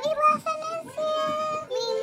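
Young girls singing, with a long held note about halfway through and another voice joining on a new note near the end.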